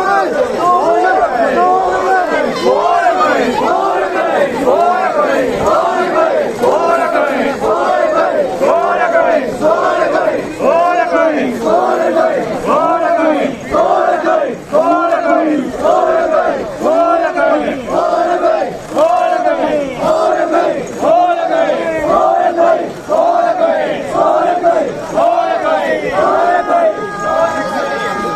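A group of mikoshi bearers chanting together in a steady rhythm, about two shouts a second. A steady high tone joins near the end.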